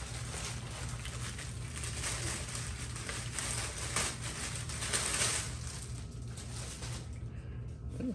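Clear plastic bag crinkling and rustling as it is handled and pulled off a statue, loudest through the middle and dying away about seven seconds in.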